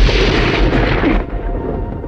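Explosion sound effect: a loud boom with a deep rumble that dies away over about a second and a half.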